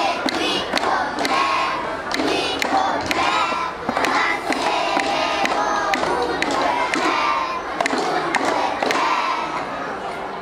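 A large group of young children shouting and singing together, with repeated hand claps through it.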